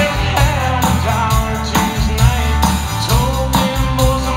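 Live country-rock band playing a song: acoustic and electric guitars, bass and a steady drum beat, with a male voice singing the melody.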